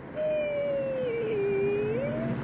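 A man's voice making one long wordless sung "ooh", its pitch sagging slowly and then rising near the end.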